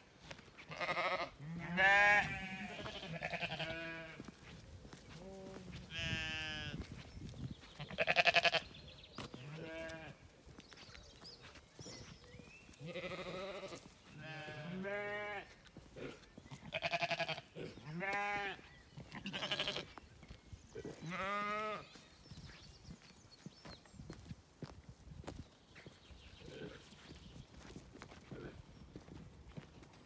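Zwartbles sheep bleating, one wavering call after another from several animals, loud and frequent for the first twenty seconds or so, then fainter and sparser near the end.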